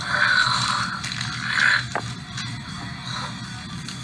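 Background music from the fan animation's soundtrack, with two hissing swishes in the first two seconds and a sharp click about two seconds in.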